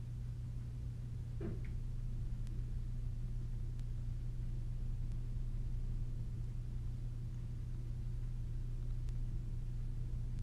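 Steady low hum with a faint background rumble. About one and a half seconds in, a short soft falling vocal sound like a murmured "boom".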